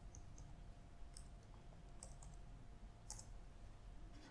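Faint, scattered clicks of computer keyboard keys typing a short file name, over a quiet low hum.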